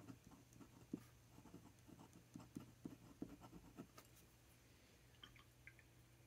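Faint scratching of a pen nib on card stock as a word is hand-lettered in short strokes, mostly in the first four seconds.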